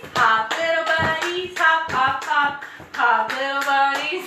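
A woman singing a children's song while clapping her hands to a steady beat, about two claps a second.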